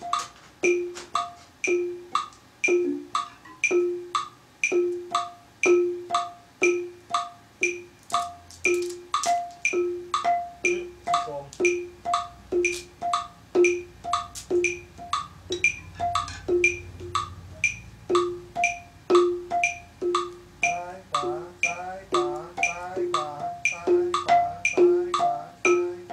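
Ranat ek, a Thai wooden xylophone, played with mallets: slow, evenly spaced strikes, mostly on one repeated note at about three every two seconds. Near the end the notes come quicker, in a short run of changing pitches.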